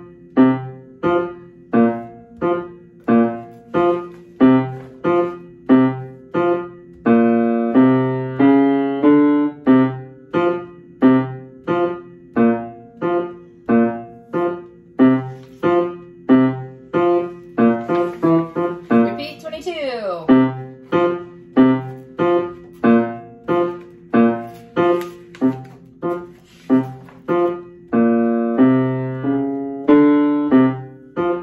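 Upright piano playing a band's tuba and bass clarinet part: short, detached low notes on a steady beat, with some notes held longer. A brief rustle of sheet music comes a little past the middle as a page is turned.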